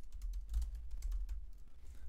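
Typing on a computer keyboard: a quick, irregular run of keystrokes entering a line of code, over a low steady hum.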